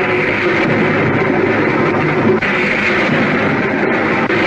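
Loud, dense background music from a Hindi film score that starts abruptly and holds steady, as a closing swell.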